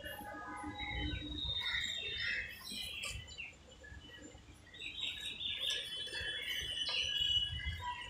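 Birds chirping, many short overlapping calls and whistles, over a low background rumble.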